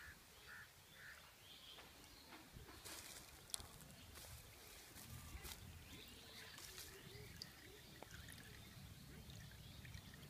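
Near silence: faint outdoor ambience with a few faint, short animal or bird calls and some small clicks.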